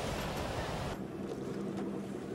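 Breaking ocean surf, a rushing wash of water noise that thins out about a second in.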